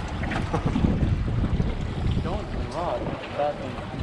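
Wind buffeting the microphone, a steady low rumble, on an open boat at sea, with a few short snatches of voices in the second half.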